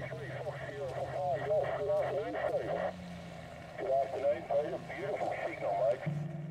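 Indistinct voices that cannot be made out, over a steady low hum that rises briefly in pitch about three seconds in.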